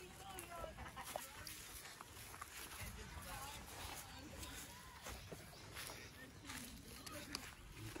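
Faint outdoor background with occasional short bird calls and light handling noise.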